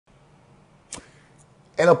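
A single sharp click about a second in, over faint low room hum; a man's voice starts speaking near the end.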